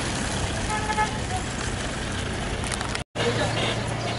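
A car moving slowly across a paved lot, with a short vehicle horn toot about a second in. The sound drops out for a moment near the end.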